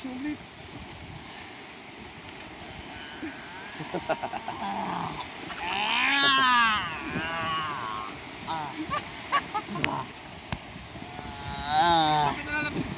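A person's voice making drawn-out vocal sounds with no clear words. The loudest is a long cry that rises and falls in pitch about six seconds in, with shorter calls near the end, over a steady background hiss.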